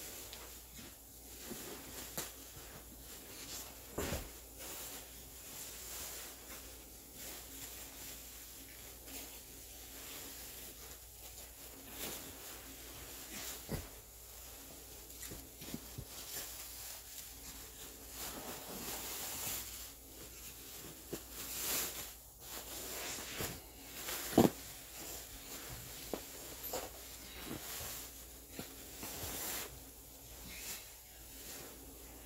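Intermittent rustling and soft handling noises of a plastic bag and a cushion being worked into its cover, with one sharper knock past the middle.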